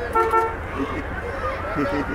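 Vehicle horn giving two quick short toots near the start, with crowd voices around it.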